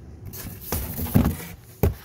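Rustling handling noise with a few knocks as a phone and toys are moved; the loudest knock is about a second in and another comes near the end.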